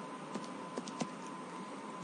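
Typing on a computer keyboard: about five separate key clicks in the first second or so, over a steady faint background hiss.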